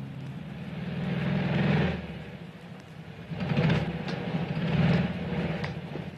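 Air-cooled flat-four engine of a Volkswagen Type 181 running as the car drives, its sound swelling and falling back three times.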